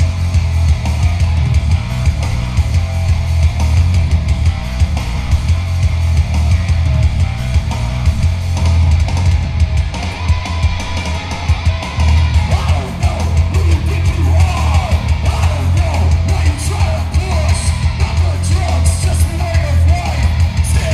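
Hardcore punk band playing live: distorted electric guitars, bass and drum kit, loud and continuous, with yelled vocals coming in a little past halfway.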